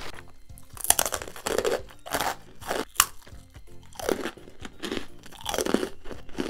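Japanese rice cracker (senbei) being bitten and chewed close to the microphone: a run of crisp, irregular crunches, the sharpest about a second in and again about three seconds in.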